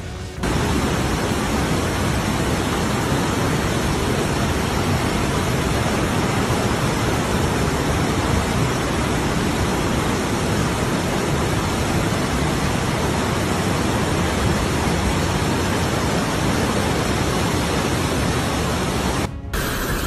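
Rushing floodwater: a loud, steady rush of noise from a fast torrent, starting abruptly just after the start and cutting off suddenly about a second before the end.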